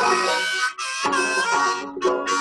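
Harmonica in a neck rack playing a melody of held notes over plucked banjo, in an instrumental break of a country-style song. The notes dip briefly just under a second in and break off for a moment near the end.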